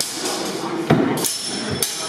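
Steel practice swords striking each other: a few sharp clashes, the strongest about halfway through, the later ones leaving a brief metallic ring.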